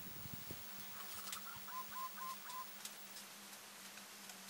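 A bird calling faintly: a quick run of about four short, clipped notes in the middle, among a few faint ticks. A low thump comes right at the start.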